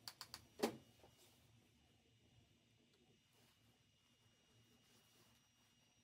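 Near silence: faint room tone, with four quick clicks in the first second, the last the loudest.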